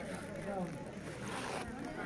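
Low outdoor background: faint distant voices over a rumble of wind on the microphone.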